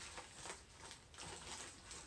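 Faint rustling and a few small taps of a packet being handled and opened by hand.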